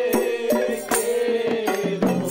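A Bengali kirtan: men singing a devotional chant together, with a double-headed barrel drum, hand claps and small hand cymbals (kartal) striking a quick, steady beat under the held, gliding melody.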